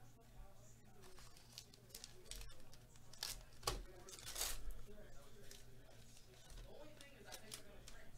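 A trading-card pack wrapper being torn open and the cards handled: soft rustling and tearing, loudest in a few sharp rips about three to four and a half seconds in.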